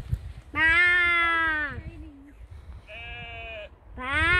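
A person imitating a sheep with a loud, long, drawn-out 'baa' that sags slightly in pitch. About three seconds in, a fainter, shorter and higher bleat follows, which sounds like a distant sheep answering.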